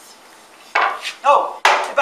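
A wooden board knocked down onto the table of a dimension saw that is not running: two sharp knocks, the louder one near the end.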